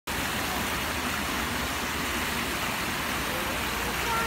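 Steady rush of a fountain jet splashing back onto rock and into a pool.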